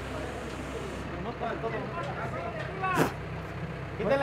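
The engine of the lifting machine running steadily under faint calls from the crew, with one short shout about three seconds in.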